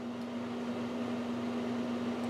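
A steady low hum, one unwavering tone, over a faint background hiss.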